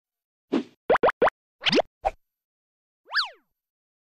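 Cartoon-style sound effects of an animated logo sting: a soft thump, three quick rising pops, a longer upward sweep and a short blip, then, near the end, one pitched tone that glides up and back down.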